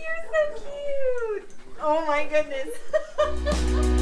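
High-pitched, wavering vocal calls, one a long downward slide, with no words in them. About three seconds in, intro music starts with steady low bass notes and grows louder.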